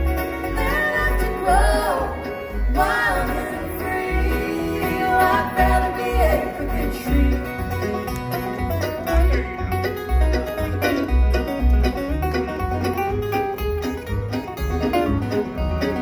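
Live acoustic bluegrass band playing: banjo, fiddle, acoustic guitar, mandolin and plucked upright bass, the bass notes keeping a steady beat under the sliding fiddle and picked strings.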